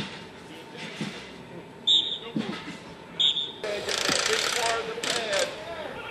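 Outdoor football practice field: two sharp, short, ringing clacks about a second apart, then a wash of distant shouting voices and field noise.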